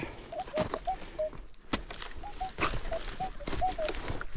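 Minelab metal detector giving a string of short, mid-pitched target beeps, about a dozen at uneven spacing, as its coil sweeps back and forth over a buried target. Light clicks and rustles from the coil brushing through dry grass.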